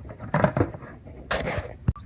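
Handling noise from plastic lids and containers: two short scraping rustles, then a sharp click near the end.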